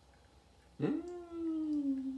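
A pet animal gives one long, drawn-out whine of about a second and a half, starting about a second in. It sweeps up sharply at the start, then sinks slowly in pitch.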